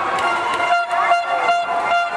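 A horn blown in the arena crowd, held on one steady note for over a second, over crowd shouting, with several sharp smacks.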